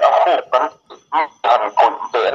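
Speech only: a voice talking in short phrases with brief pauses.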